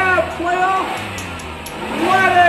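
Music with a drawn-out, pitch-bending vocal line in the first second, quieter after that, over a low steady hum.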